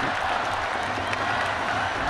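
Baseball stadium crowd applauding and cheering in a steady wash of noise, the home crowd's reaction to a run scored on a running home run.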